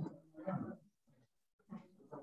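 A person's voice making two short, indistinct murmured sounds, one at the start and a briefer one near the end.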